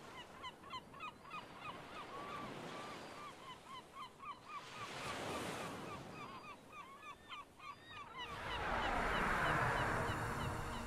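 A flock of birds honking over and over, several short calls a second, under a rushing noise that swells and fades about every three seconds. The loudest rush comes near the end, as music begins.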